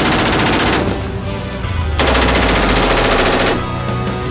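Daniel Defense MK18 short-barreled 5.56 rifle firing on full auto in two bursts. The first burst ends about a second in, and a second burst of about a second and a half starts two seconds in.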